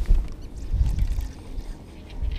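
Low rumble of a bass boat on open water, water and wind around the hull, coming in uneven surges.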